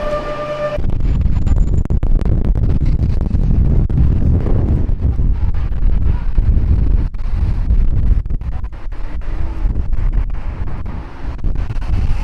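Wind buffeting the camera's microphone: a loud, uneven low rumble that comes in gusts.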